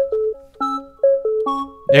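SonicCat Purity software synthesizer playing a short repeating melody, a few pitched notes a second that alternate between higher and lower tones and fade out after each one.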